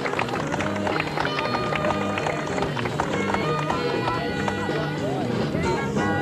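Jazz big band playing live. The horn section holds sustained chords from about a second in, over a steady bass and a busy drum kit with cymbal strokes.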